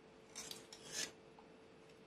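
Two brief, faint scratchy rubs about half a second apart, from a glue tube and balsa wood parts being handled against a plastic cutting mat, over a faint steady hum.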